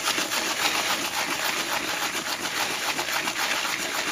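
Clock chain scrubbed between gloved hands in a soapy cleaning solution: a steady wet rubbing with a rapid patter of small clicks from the links working against each other.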